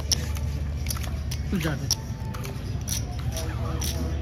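Casino table ambience: background voices and music over a steady low hum, broken by several short, sharp clicks.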